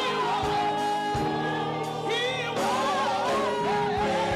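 Gospel choir singing live, lead voices out front over the choir's held notes, with a wavering vocal run a little past halfway.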